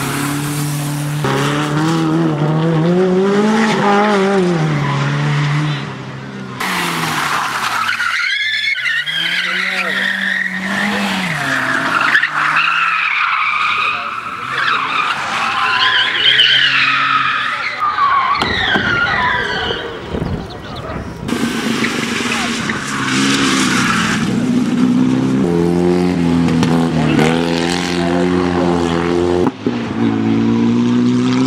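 Rally sprint cars driven hard one after another through a tight turn: engines revving up and down through the gears, with tyres squealing in the middle stretch. The cars heard in turn are a Renault Clio, a BMW 3 Series Compact and a VW Jetta race car.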